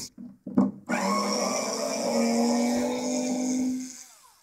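Small cordless screwdriver motor running steadily for about three seconds, starting about a second in after a few light knocks, its pitch stepping up slightly partway through, as it drives a screw in the carbon-fibre sheet clamped to the CNC bed.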